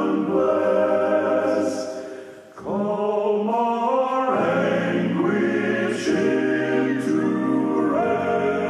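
Male vocal quartet singing a hymn in close harmony on long held chords. The phrase fades out about two and a half seconds in, and a new phrase begins right after it.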